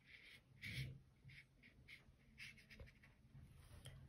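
Faint soft strokes of a paintbrush on watercolour paper, a handful of short brushing sounds at uneven intervals.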